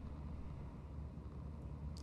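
Faint, steady low hum of room tone, with no distinct sounds.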